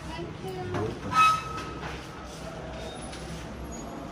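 Indistinct background voices over a steady room hum, with a brief sharp sound about a second in.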